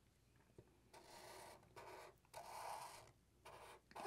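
Sharpie marker tip faintly scratching across marker paper in four short strokes, starting about a second in, as a zigzag line is drawn.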